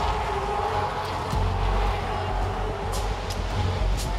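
Pit lane noise: an even hiss of fire extinguishers being discharged at a car fire over a steady low engine rumble.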